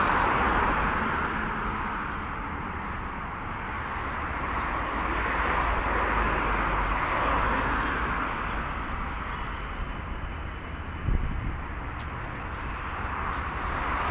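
Street traffic: cars passing on a city avenue, a steady wash of tyre and engine noise that swells and fades over several seconds. There is a short knock about eleven seconds in.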